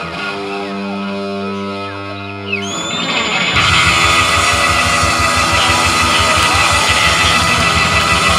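Live rock band of electric guitars, Hammond organ and drums. A held chord rings for the first two and a half seconds, then the full band comes back in louder about three and a half seconds in, the drums keeping a fast, steady beat.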